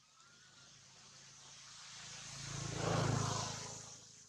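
A motor vehicle passing by: its engine hum and road noise build up, peak about three seconds in, then fade away.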